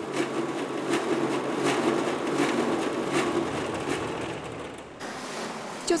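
A machine running steadily, with a regular knock a little more than once a second; the sound changes about five seconds in.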